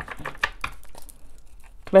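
Tarot cards being handled: a scattered series of short, crisp flicks and rustles of card stock, with a woman's voice starting to speak at the very end.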